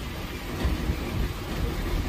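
Passenger train rolling slowly alongside a station platform, heard from inside the coach at the window: a steady, noisy low rumble that swells and dips irregularly.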